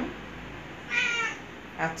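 Domestic cat meowing once, about a second in.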